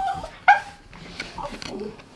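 Small dog giving one short, sharp yip about half a second in, begging for a snack.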